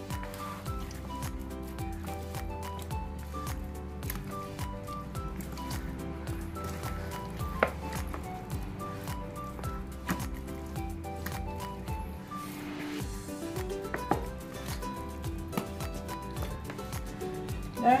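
Background music with sustained notes and a steady bass line, with a few faint clicks and squelches from hands working chicken pieces in a spice marinade in a plastic bowl.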